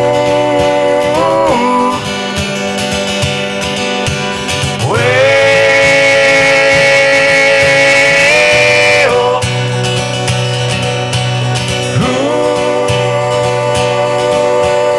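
Acoustic guitar picked with a flat pick while a man sings long held notes over it. About five seconds in, the voice slides up into a note and holds it for about four seconds.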